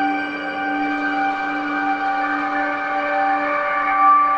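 Waldorf Iridium synthesizer playing a drone from its resonator engine, with no samples or external effects: a sustained chord of several steady tones that slowly morphs, while a high hiss above it thins out about a second in.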